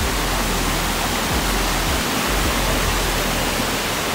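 Water rushing steadily over flat rock ledges in a shallow cascade: an even, unbroken hiss.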